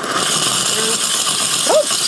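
Rancilio Silvia V3 steam wand hissing steadily as its steam valve is held open with the steam switch off, venting leftover steam from the single boiler after steaming.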